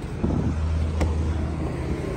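A car door latch clicks once about a second in as the door is opened, over a steady low hum of a vehicle engine.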